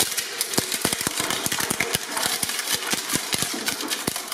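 Twin-shaft shredder's cutter discs biting into a wooden plank: rapid, irregular cracking and splintering of the wood over the machine's steady hum.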